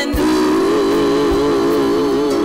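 A small group of women singing a hymn together, holding one long note with vibrato after a brief break at the start.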